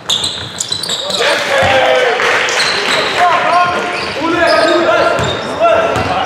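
Voices shouting in a large sports hall during a basketball game, rising suddenly at the start as a shot goes up, with a basketball bouncing on the wooden floor.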